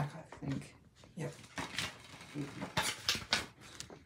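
Plastic DVD case clicking and clacking as it is handled and opened, a run of sharp clicks in the second half, with a paper insert taken out. A short murmured voice sounds at the start.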